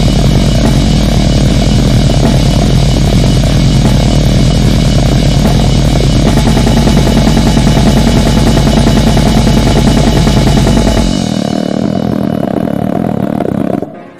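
Extreme-metal (goregrind) music: fast, steady drumming under heavily distorted guitars and bass. About eleven seconds in, the drums and low end drop out and the remaining guitar noise thins and fades.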